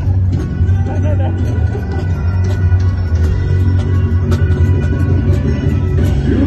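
Live rock band music over stadium loudspeakers: a heavy, steady bass line, with singing coming through in places.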